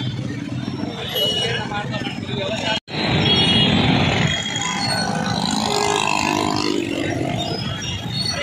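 Street traffic noise of motorcycles and cars passing, with unclear voices of people nearby. The sound drops out for a moment about three seconds in.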